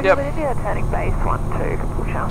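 Steady drone of a Sling light aircraft's piston engine and propeller, heard from inside the cockpit in flight.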